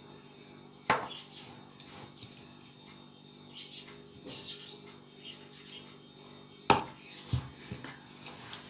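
Hands kneading a dry, crumbly mix of crushed biscuits and peanuts in a ceramic bowl, a faint rustle under a steady low hum. Two sharp knocks stand out, one about a second in and a louder one near the end, followed by a smaller knock.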